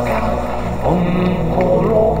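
Live-looped vocal music: a steady low drone and layered voice parts repeat from a loop station, and about a second in a male voice slides up into a long held low note.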